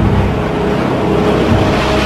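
Jet aircraft engine noise, steady, with a few held tones running through it.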